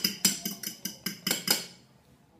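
A utensil beating eggs by hand in a ceramic bowl: quick, rhythmic clicks of about four a second as it strikes the bowl's side. They stop about a second and a half in.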